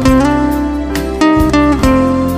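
Acoustic guitar playing a slow instrumental worship melody over held bass notes. Melody notes slide into their pitch about a quarter second in and again near the end.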